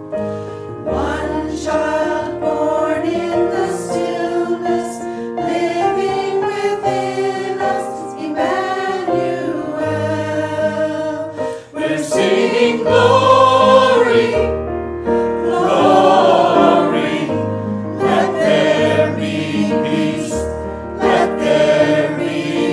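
Singing of a sacred piece with digital piano accompaniment, the sung notes held with vibrato over low piano notes that change about every two seconds.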